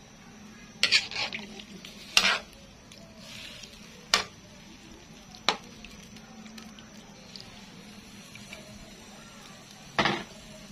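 A utensil stirring pork adobo in a pan, with sharp clinks and knocks against the pan in the first half, over a faint steady sizzle of the simmering meat.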